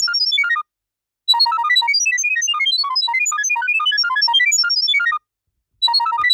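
Smartphone speaker playing a rapid string of short beeps that hop up and down in pitch: the app's sound-wave Wi-Fi pairing signal, which sends the network details to the smoke-detector camera. The beeping stops for about half a second just after the start and again near the end, then starts over.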